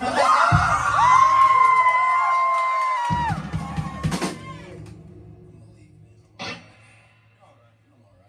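Live rock band letting out a short loud burst: a high held note slides up, holds for about three seconds over guitar and drums, and slides down. It ends on a cymbal crash about four seconds in that rings and fades.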